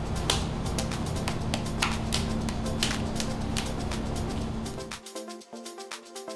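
Electronic background music with a deep, dense bass section and a steady held tone, struck by sharp regular beats a few times a second. About five seconds in, the heavy low part drops out, leaving lighter melodic notes.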